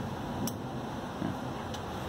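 A steady low hum with one light click about half a second in, as a wire connector is pulled out by hand.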